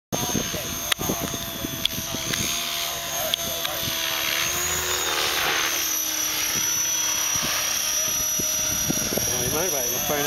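Align T-Rex 550e electric RC helicopter in flight: a steady high-pitched motor and rotor whine whose pitch shifts slightly as it manoeuvres.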